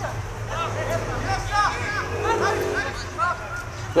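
Short shouted calls from several people at an outdoor football match, over a steady low rumble. A louder voice starts right at the end.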